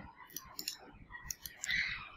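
A few faint, sharp computer mouse clicks, spaced irregularly, with a brief soft rushing sound near the end.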